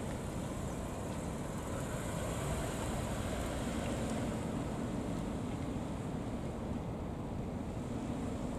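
Steady outdoor traffic rumble with wind noise on the microphone, with no single distinct event.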